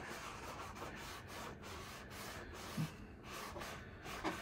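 Damp craft sponge rubbed back and forth over a photo transfer on canvas, a faint steady scrubbing as it wets and lifts away the paper from the dried glue. One brief low sound stands out a little under three seconds in.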